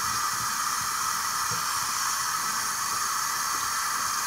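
A steady, even hiss with no other distinct sound.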